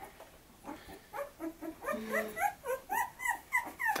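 Young boxer puppy whimpering: a quick run of short, high squeaks, a few a second, starting about a second in.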